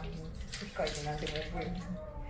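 Water poured from a bamboo ladle splashing over a hand and onto the stones of a stone water basin (tsukubai), a ritual hand rinsing.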